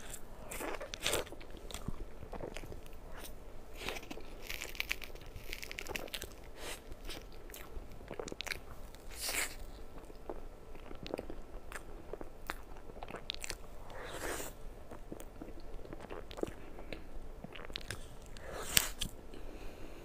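Close-miked eating of a soft cream-filled mille crêpe cake: wet bites, chewing and lip smacks in an irregular, unbroken stream, with a sharper click near the end.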